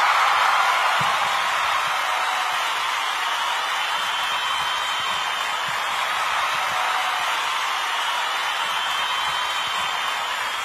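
A steady, even hiss of noise, slightly louder at the start and then holding level.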